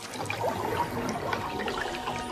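Churning, bubbling water, a designed sound effect of something moving under the surface of a pond, with faint sustained tones underneath.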